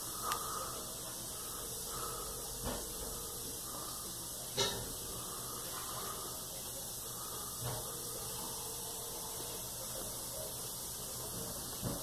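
Quiet room tone with a steady hiss and about five brief faint taps or clicks spread out, the clearest near the middle.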